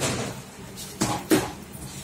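Sharp knocks or clatters of hard objects, one at the start and two close together about a second in, over a steady low hum.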